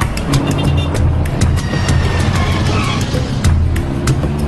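City street traffic from cars passing, mixed with background music.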